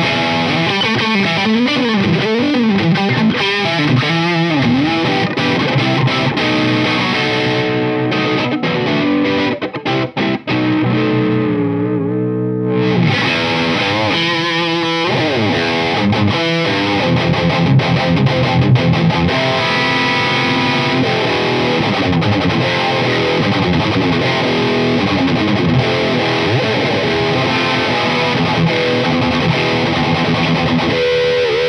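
Jackson Concept Soloist electric guitar, fitted with a Floyd Rose and Seymour Duncan pickups, played with distortion through an amp: continuous lead playing with wavering, bent notes in the first few seconds. The tone turns darker for a few seconds near the middle, then brightens again.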